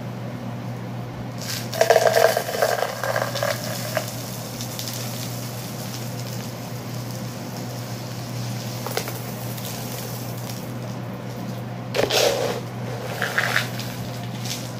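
Dry beans and rice rattling and pattering as they are scooped and poured with plastic cups, in two bursts: about two seconds in and again about twelve seconds in.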